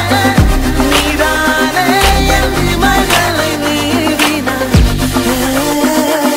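Background pop music with a steady beat, a bass line and a melody.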